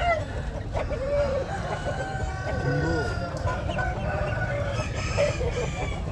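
Several gamecock roosters crowing over one another, long drawn-out calls at different pitches overlapping, over a steady background of crowd chatter.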